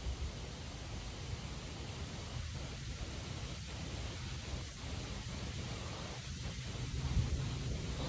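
Steady outdoor background noise: an even hiss with a low, uneven rumble underneath, as of light wind on the camera's microphone.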